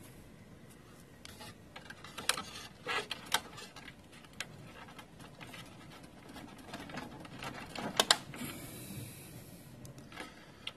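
Hands working a flat ribbon cable loose from a laser printer's formatter board: scattered small clicks and rubbing, with two sharp clicks about eight seconds in.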